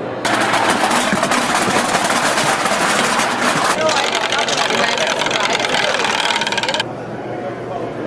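A loud, fast, even mechanical rattle of clicks that starts abruptly just after the start and cuts off abruptly about seven seconds in, with voices underneath.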